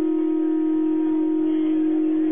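Conch shell trumpet blown in one long, steady note.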